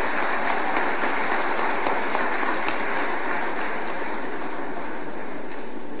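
A large audience applauding, a dense even clapping that eases off slightly toward the end.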